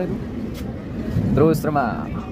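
Steady running noise of a passenger train coach, heard from inside near the open door, with a man's voice breaking in briefly about a second and a half in.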